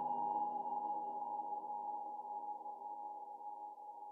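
The final held synth chord of an electronic dance track, several steady pitches ringing on and slowly fading out.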